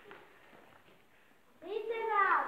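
Near silence: quiet room tone, then a person's voice starts speaking near the end.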